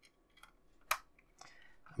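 A few faint ticks and one sharp click about a second in, from a small screw and screwdriver being set into the front subframe of a 1:8 scale model car chassis.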